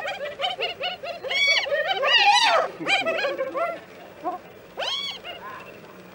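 Spotted hyenas giggling in a squabble over food: rapid runs of short high-pitched calls that rise and fall, dense for about three seconds and then thinning to a few single calls. The giggle is a sign of nervous energy, not of enjoyment.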